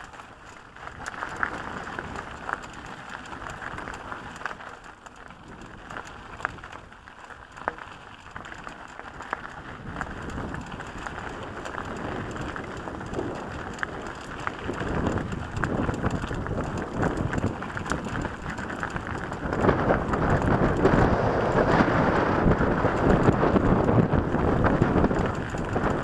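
Mountain bike rolling over loose gravel singletrack: tyres crunching on stones, with sharp clicks and rattles from the bike and camera mount. The noise grows louder through the second half, heaviest in the last few seconds.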